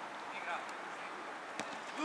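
Faint distant shouts of players and coaches on a football pitch over a steady background hiss, with a faint knock about one and a half seconds in.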